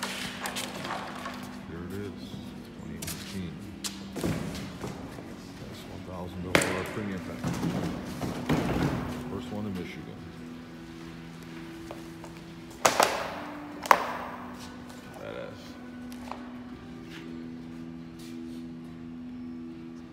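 A cardboard motorcycle shipping crate being pulled apart and handled: rustling and scraping, with several thumps and knocks. The sharpest two come close together about two-thirds of the way through. Faint music plays throughout.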